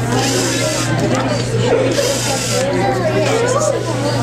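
Several children's voices chattering at once, over a steady low hum, with bursts of hiss about a second long near the start and again around the middle.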